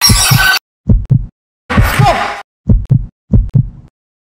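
An edited sound-effect track of low double thumps like a heartbeat, about one pair a second. Two short, louder, noisier bursts are cut in, one at the start and one about two seconds in. Each sound cuts off abruptly into dead silence.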